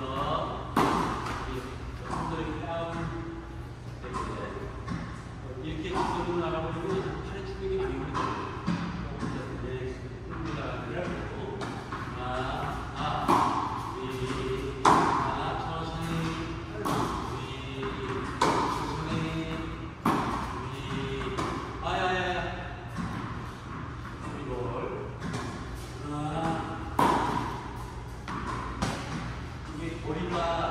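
Tennis balls being hit with a racket and bouncing on an indoor hard court, a sharp knock every second or two that echoes in the large hall.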